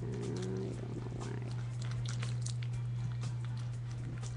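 Steady low hum with scattered faint clicks over it.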